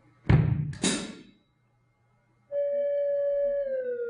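Two loud percussion strokes on a stage bass drum set-up, about half a second apart, the second brighter and more crash-like, ringing away within a second. After a short silence a held pitched note begins, steady at first and then sliding down near the end.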